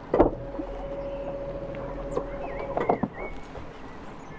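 Small electric motor of a children's electric ride boat running with a steady hum as the boat pulls away, opening with a knock; the hum cuts off near three seconds in.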